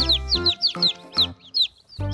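Baby chicks peeping: a quick run of short, falling chirps, several a second, over background music, with a brief lull near the end.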